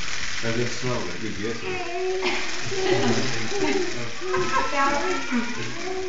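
Several people's voices overlapping in indistinct talk, with a laugh about four seconds in.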